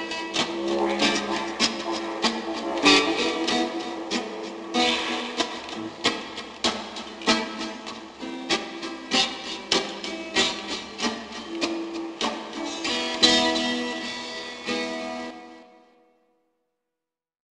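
Music: a strummed acoustic string instrument played with sharp, uneven strokes. Its last chord, struck about 13 seconds in, rings and fades away near the end as the track finishes.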